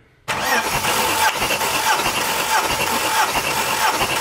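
Ford AU Falcon inline-six cranking on its starter motor without firing, with a rhythmic beat as each compression stroke comes round. The engine is spun with the fuel pump relay removed so that a compression gauge can read one cylinder, here building to about 230 psi. It starts suddenly about a quarter second in.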